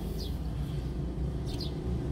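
Steady low rumble heard inside a car, with a few short, high bird chirps: one just after the start and two close together near the end.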